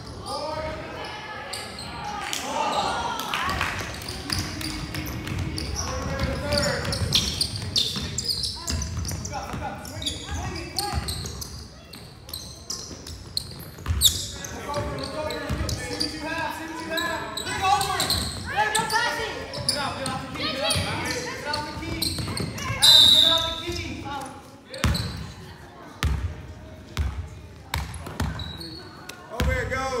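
Basketball game in a large gym: the ball bouncing on the hardwood floor with sharp knocks throughout, under a steady mix of players' and spectators' voices and shouts. A brief, loud, high-pitched tone stands out about two-thirds of the way through.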